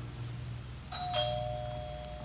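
Two-tone door chime: a higher note about a second in, then a lower note a moment later, both ringing on.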